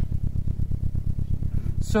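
Digitally synthesized car-engine rumble from a spatial-audio demo. It is a low, steady drone that pulses about ten times a second, placed close by and quite loud.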